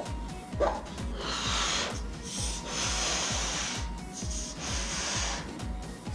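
A latex balloon being blown up by mouth in several long breaths, with the hiss of air rushing in. Background music with a steady beat runs underneath.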